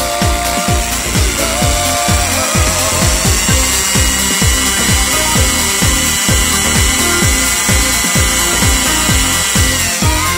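A handheld mini drill with a fine bit runs with a steady high whine as it drills into a thin aluminum strip. Underneath is electronic dance music with a steady kick-drum beat.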